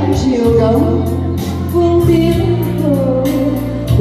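A woman singing a Vietnamese bolero song into a handheld microphone, her gliding melody carried over backing music with sustained bass and a regular light percussion beat.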